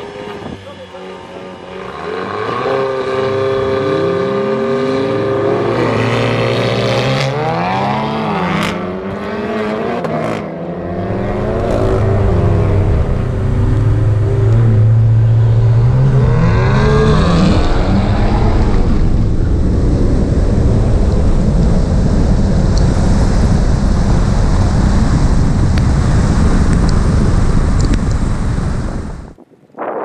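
Tuned turbocharged cars, a Stage 3 Skoda Octavia VRS, a Stage 3 Audi TT and a Stage 2 BMW M340i, revving on the start line and then launching hard in a drag race. The engines climb in pitch through the gears, dipping at each shift, and about two-thirds in give way to a loud steady rush of engine and wind noise that cuts off suddenly near the end.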